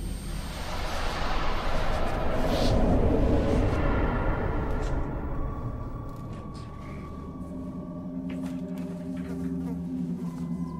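Horror film score: a dark swelling rumble and hiss that fades after about five seconds into a few sustained ringing tones.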